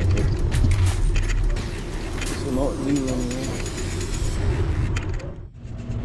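Wind and road noise on a camera riding on a moving bicycle, a steady low rumble with scattered clicks and rattles, and a brief voice-like sound about two and a half seconds in. The noise drops away suddenly about five and a half seconds in.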